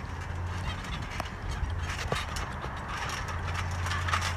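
Trampoline springs and mat creaking as two wrestlers shift their weight in a headlock, with a few scattered sharp clicks over a steady low hum.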